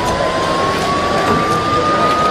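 A siren winding up: one steady tone slowly rising in pitch, over loud street noise.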